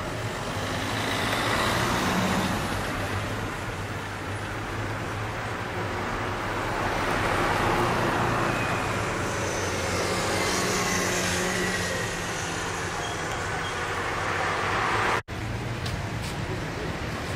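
Street traffic: cars driving past close by, the road noise swelling as each passes, once about two seconds in and again more broadly around eight to ten seconds in.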